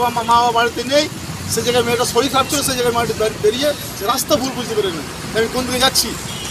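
A man speaking, over a steady hum of street and traffic noise.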